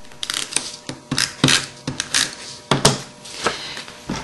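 Short scrapes and clicks of paper crafting on a tabletop: a snail tape-runner being rolled along a strip of cardstock to lay adhesive, with paper being handled and two sharp clicks a little past two-thirds of the way through.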